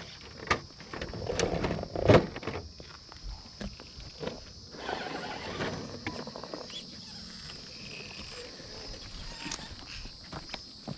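A scale RC rock crawler clambering over rocks: its tyres and chassis scrape and knock on the stone, with sharp knocks about half a second and two seconds in. A faint steady high whine runs underneath.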